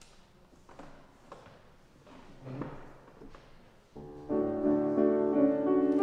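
Faint rustles and small knocks, then about four seconds in a grand piano starts playing full, sustained chords as the introduction to a song the choir and congregation are about to sing.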